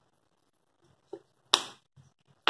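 Small plastic spice bottle shaken over a steel mixer jar to tip in cumin powder: a faint tap about a second in, then one sharp click about one and a half seconds in.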